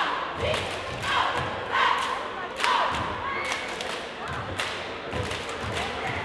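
Cheerleading squad's stomp-and-clap cheer: sharp hand claps and foot stomps on a wooden gym floor in an uneven beat, with voices chanting together, strongest in the first half.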